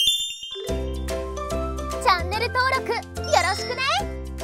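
A short sparkly chime jingle, then upbeat children's music with a bass line and beat starting about a second in, and a high, cartoon-character voice speaking over the music in the second half.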